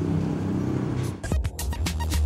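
A vehicle engine running in street traffic, then, a little over a second in, background music with a heavy bass line and a quick drum beat starts.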